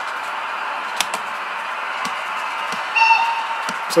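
Button clicks on a Fleischmann Profi-Boss handheld DCC controller over a steady hiss, with one sharp click about a second in and a short high tone about three seconds in.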